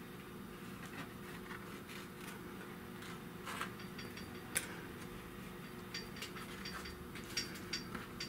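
Faint light clicks and scrapes as vinyl is trimmed flush on a metal panel with a small blade and handled, with one sharper click about four and a half seconds in, over a steady low hum.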